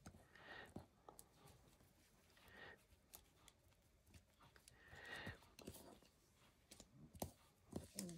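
Near silence, with faint brushing and a few soft taps from hands pressing and smoothing a gauze-and-lace strip down onto paper.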